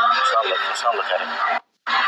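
A person's voice with a thin, radio-like quality, cut off abruptly by a short gap of dead silence near the end.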